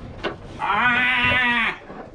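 A Nigerian Dwarf goat bleating once, a single wavering call of about a second.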